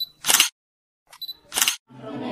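Camera shutter sound effect, played twice: each time a short high focus beep followed by the shutter click, the second about a second and a half in.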